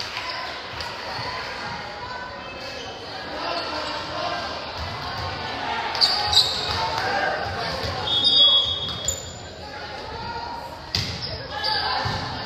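Volleyball rally in a reverberant gym: the ball is struck with sharp smacks about six seconds in, twice in quick succession, and again near the end, over indistinct calls and chatter from players and spectators.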